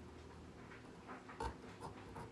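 Small serrated pumpkin-carving saw cutting through a raw turnip: faint, scattered scraping strokes, with one sharper click about one and a half seconds in.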